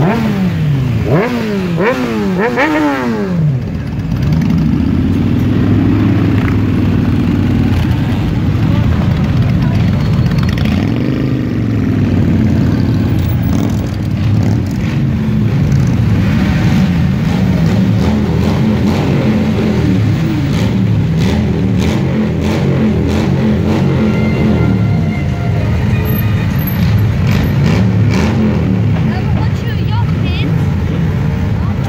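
A procession of motorcycles riding slowly past, many engines running together. In the first few seconds, engines are revved several times, the pitch rising and falling in quick sweeps, then the bikes settle into a steady run.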